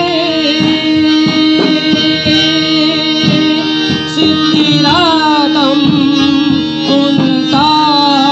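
Live qawwali-style music: a harmonium holds a steady drone and melody over drums and cymbals. A wavering, gliding melodic line, most likely a singing voice, rises over it about halfway through and again near the end.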